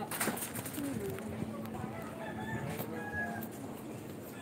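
A rooster crowing in the background, its last note long and drawn out. There is a sharp knock right at the start.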